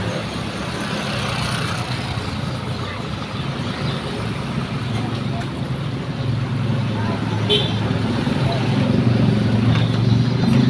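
Busy street traffic at close range: motorbike and car engines running as they pass, over a steady road noise. A heavier engine grows louder near the end as a large vehicle pulls close.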